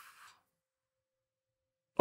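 Near silence: a breathy laugh trails off in the first moment, then dead quiet with only a very faint steady tone.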